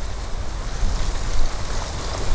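Wind buffeting the microphone outdoors: an uneven low rumble with a steady hiss over it.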